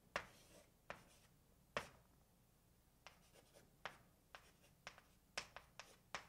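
Chalk on a blackboard writing math symbols: a string of sharp, irregular clicks and taps, sparse at first, then a quicker run of strokes in the second half.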